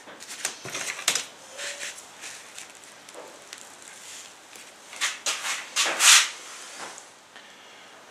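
Handling noises on a wooden mould frame: scattered light knocks and clicks, with a few louder rustles between about five and six seconds in.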